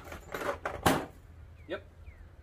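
Plastic Pittsburgh socket-set case being shut, the metal sockets inside rattling, then the lid closing with one sharp clack just under a second in.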